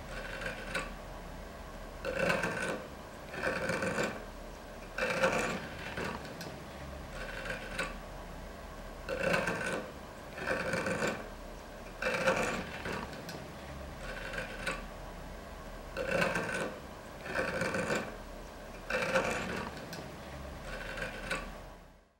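A hand rasp or file working wood: repeated scraping strokes, about one every second or so, often in pairs, fading out at the end.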